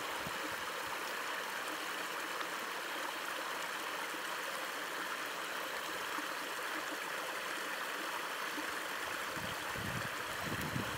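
Small mountain creek running over rocks: a steady rush and babble of water that stays even throughout.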